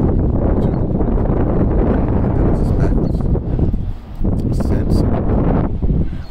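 Wind buffeting the microphone: a loud, low rumbling noise that drops away briefly about four seconds in.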